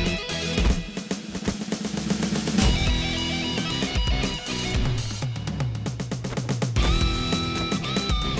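Rock music with a drum kit and electric guitar playing together: quick, steady drum hits under held guitar notes, with a high sustained note coming in near the end.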